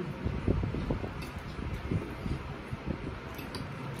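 A man chewing a mouthful of food over a steady fan-like hum, with a few faint clicks.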